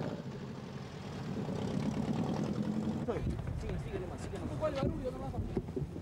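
A low steady rumble with several people's voices talking over one another, the voices coming in about three seconds in.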